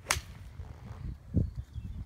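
A golf club striking a ball off the turf: one sharp crack just after the start, followed by a low rumble on the microphone that peaks about a second and a half in.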